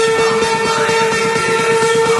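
Electronic dance music: a loud, buzzy synth note held at one steady pitch over a fast, even pulsing beat.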